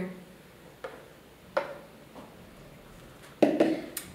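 Light knocks of ceramic bowls and a glass blender jug on a tiled counter as blended pumpkin soup is poured and served. There are three short knocks, then a louder knock near the end that is overlapped by a brief voice.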